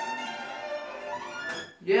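A violin playing a passage, breaking off just before the end.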